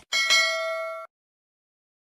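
A short click followed by a bright metallic bell ding that rings for about a second and cuts off abruptly. It is the notification-bell chime sound effect of a subscribe-button animation.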